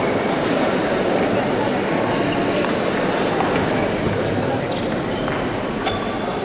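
Table tennis ball clicking sharply off the paddles and table during a rally, a sharp click every second or so, over a steady murmur of crowd chatter.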